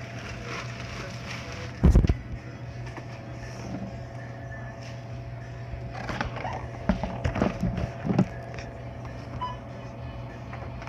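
Knocks and rustling of things being handled close to a phone microphone, with one loud thump about two seconds in and a run of knocks and rustles between about six and eight seconds, over a steady low hum.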